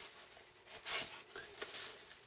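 Faint rustling of a paper towel being handled while wiping squeezed-out wood glue off a glued joint, with a couple of brief rustles about a second in and again shortly after.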